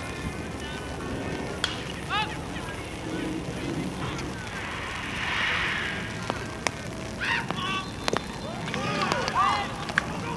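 Outdoor baseball game sound: players' shouts carry across the field, with a sharp bat-on-ball crack about eight seconds in, followed by a burst of louder shouting.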